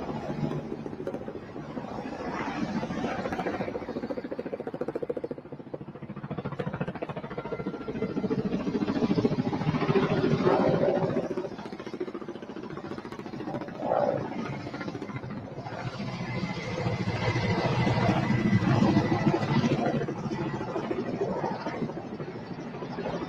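Street and traffic noise with vehicle engines running, swelling louder a couple of times.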